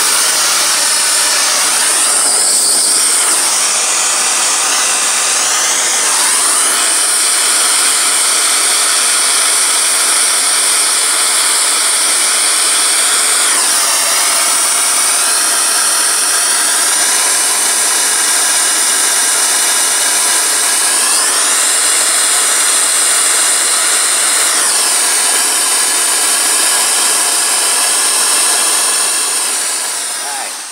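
Handheld gas torch burning with a loud, steady hiss as its flame heats the steel compressor tank to flow solder into a rusted pinhole. Faint tones within the hiss shift in pitch a few times as the flame moves, and the sound begins to die away near the end.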